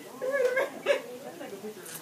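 Indistinct talk from people in the room, quieter than the nearby voices, in short broken phrases.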